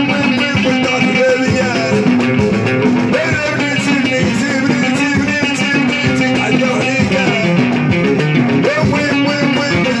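Live Moroccan chaabi (watra) music: frame drums and a tambourine keep a steady driving beat under a plucked loutar melody, with a man singing at the microphone.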